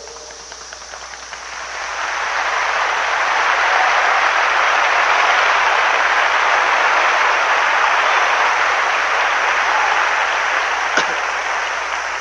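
A large audience applauding: the clapping swells over the first two seconds, holds steady, and eases off near the end, with one sharp knock just before it fades.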